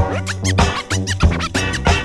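Turntable scratching over a beat: a record pushed back and forth under the stylus, giving quick rising and falling swipes, several a second, over a steady bass line and drum hits.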